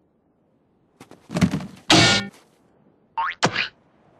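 Classic cartoon sound effects in quick succession: a thunk and a springy, pitched boing about a second in. Near the end come a short rising glide and one more quick hit.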